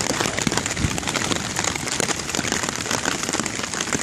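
Downpour of rain hitting a tarp shelter: a dense, steady patter of many drops.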